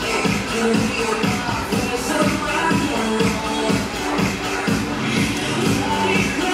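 Upbeat dance music with a steady beat.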